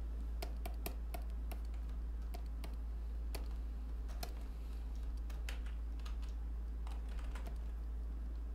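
Computer keyboard keys clicking irregularly in short runs and single taps, over a steady low hum.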